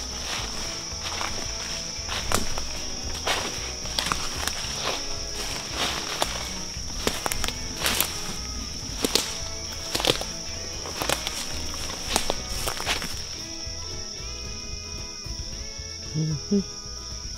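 Footsteps in dry leaf litter on a forest floor, irregular steps that stop about thirteen seconds in, over a steady high-pitched insect drone. Background music plays throughout, with a melody coming forward near the end.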